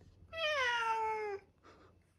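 A domestic cat meows once: a single drawn-out call of about a second that slides down in pitch.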